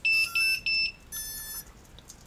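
Start-up beeps from a mini quadcopter's electronics as its battery is plugged in: three short high beeps in quick succession, then a longer, softer tone about halfway through.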